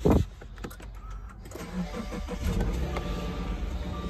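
Subaru Outback engine being started, then idling with a steady low hum that grows louder about halfway through.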